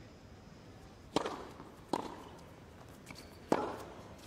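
Tennis rally: three sharp racket strikes on the ball, the serve about a second in, the return under a second later, and the loudest shot a little before the end, over the low hush of the arena.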